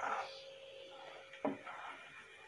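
Wooden spatula stirring a thick date pickle mixture in a nonstick pan: faint soft scraping, with a short knock about one and a half seconds in, over a faint steady hum.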